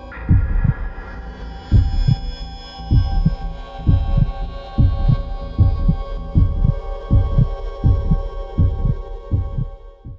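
Film-score heartbeat effect: doubled low thumps that come faster and faster, from about one beat a second to about two, over a steady droning chord. A sudden hit opens it.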